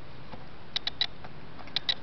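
Fingernails clicking and picking at a clear hard-plastic iPod touch case while trying to get dust off it: two quick groups of three short, sharp clicks, about a second apart.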